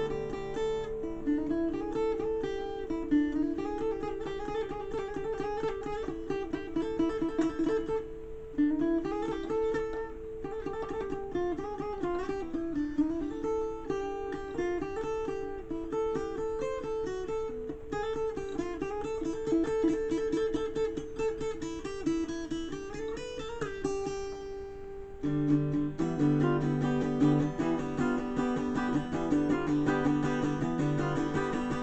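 Acoustic guitar playing an instrumental break: a picked single-note melody over sustained low notes, with fuller strummed chords coming back in about five seconds before the end.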